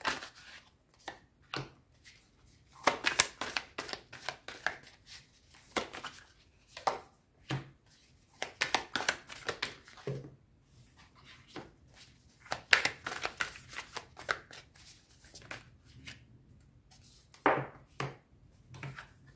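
Osho Zen Tarot cards being shuffled by hand, in bursts of rapid snapping clicks, with cards drawn from the deck and laid down on a cloth.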